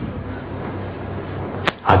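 A pause in a man's recorded lecture, filled by steady background hiss. Near the end comes a brief sharp click, and then a second one as his voice resumes.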